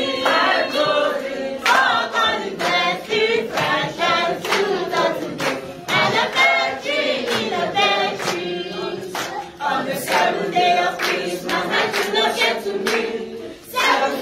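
A group of mixed voices singing together without instruments, with regular hand claps about twice a second keeping time.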